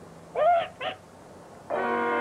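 A parrot gives two short squawks, the first louder and longer than the second. Near the end, brass instruments come in with a held chord.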